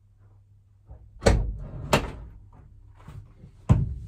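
Clunks and thuds of a 1992 Honda Acty van's driver's door being unlatched and swung open, heard from inside the cab: two sharp clunks about half a second apart, then another near the end, with lighter knocks between.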